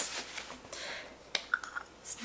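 A few light clicks and taps from kitchen items being handled on the counter, the sharpest about a second and a third in.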